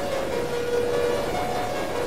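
Experimental synthesizer drone music: held tones stepping between two pitches a fifth or so apart, every half second to a second, over a dense, noisy, crackling texture.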